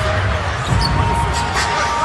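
A basketball bouncing on a hardwood court during live play, with a couple of sharp knocks, over the steady background noise of an arena crowd. A thin steady tone runs through the second half.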